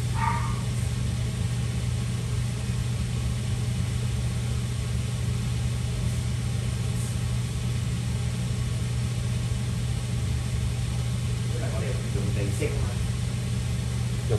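A small motor running with a steady low hum. A faint voice is heard briefly just after the start and again near the end.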